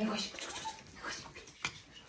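Puppy whimpering briefly, with a single sharp click near the end.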